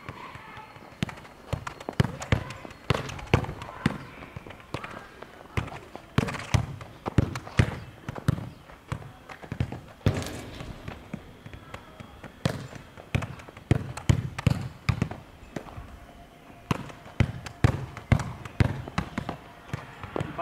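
A football being kicked back and forth in quick passes on a hard court: a long run of sharp, irregular thuds of foot on ball and ball on the ground, sometimes several a second.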